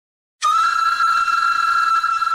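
Silence, then about half a second in a flute starts and holds one long, steady note: the opening of a Tamil film song.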